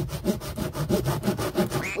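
Hand wood saw cutting through a pipe in quick, even back-and-forth strokes, a steady rasping. It cuts easily.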